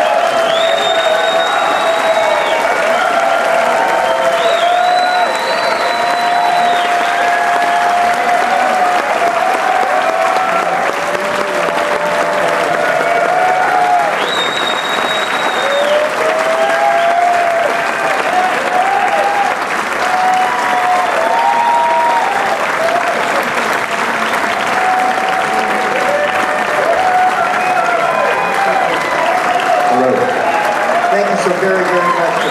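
A large theatre audience applauding and cheering, with shouts and several shrill whistles rising above the steady clapping.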